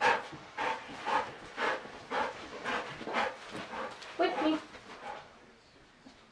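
Belgian Malinois panting hard, about two breaths a second, with a short pitched whine about four seconds in; it stops about five seconds in.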